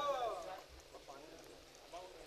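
A pause in a man's amplified recitation: a faint voice trails off in the first half second, then near quiet.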